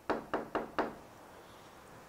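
Four quick knocks of knuckles on a hard surface, about four a second, like a knock at a door.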